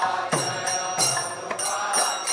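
Temple kirtan: a group of voices chanting a devotional mantra, with metal hand cymbals ringing on a steady beat.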